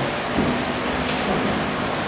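Steady room noise, an even hiss with no clear source, with a brief higher hiss about a second in.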